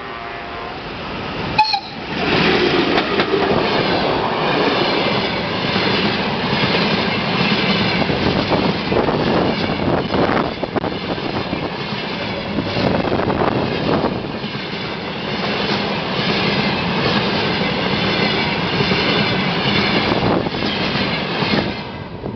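Freight train passing close by: the locomotive draws level about two seconds in, then a long run of flat wagons loaded with concrete sleepers rolls past with a continuous heavy rumble and irregular clacking of wheels over rail joints, fading at the end as the last wagon goes by.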